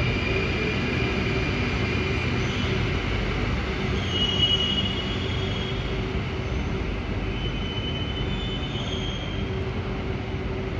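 An Alstom Metropolis C830 metro train running past along the tunnel track with a steady rumble of wheels and running gear. Thin high wheel squeals come about four seconds in and again near nine seconds, and the rumble eases a little as the end of the train clears the platform.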